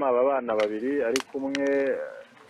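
A person's voice talking in short phrases, with one drawn-out sound near the end, and a couple of sharp clicks about half a second and a second in.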